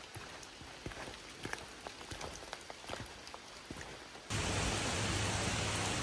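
Light rain with scattered drops ticking on leaves. About four seconds in, this gives way abruptly to a much louder steady rush with a low hum underneath.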